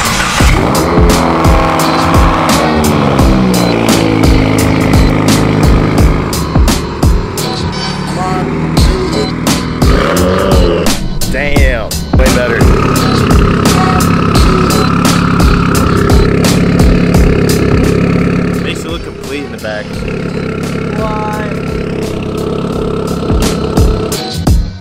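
A 2015 Subaru WRX's turbocharged flat-four with an aftermarket Tomei exhaust. Its note falls in pitch over the first few seconds, then it runs steadily, all under background music with a steady beat.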